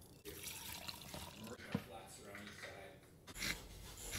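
Faint speech in a quiet room, with a single sharp click or knock a little under halfway through and a brief rush of noise near the end.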